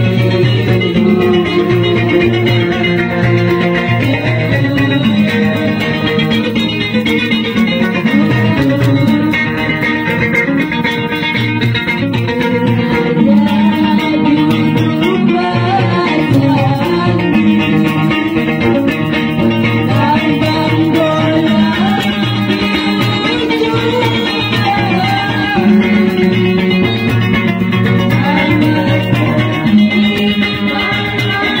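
Banjar panting music: plucked panting lutes playing a continuous tune without a break, with a voice singing along.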